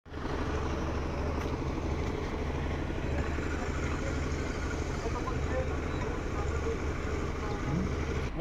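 A steady engine drone from machinery, with a low hum, and faint voices over it.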